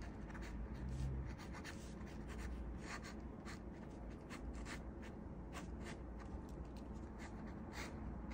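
Ink pen scratching across paper in quick, irregular sketching strokes, several a second.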